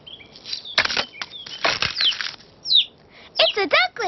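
Cartoon sound effects of an egg hatching: a few crackling bursts of eggshell breaking, then a newly hatched duckling cheeping in a quick run of short, falling peeps near the end.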